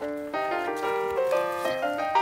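Background piano music: a melody of single notes and chords, each struck note starting sharply and fading, changing every fraction of a second.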